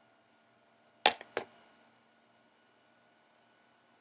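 Two sharp clicks about a second in, a third of a second apart, the first the louder, from an eyeshadow palette being handled during swatching. Otherwise near silence.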